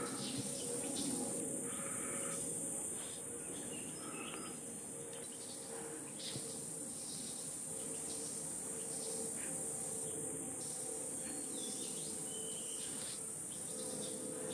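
Steady high-pitched drone of an insect chorus, with a few faint short chirps over it.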